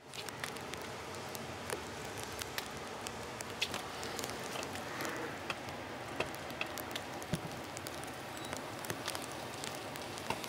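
Potassium permanganate and antifreeze (ethylene glycol) reacting: a steady faint hiss with scattered small crackles and ticks as the mixture heats toward ignition.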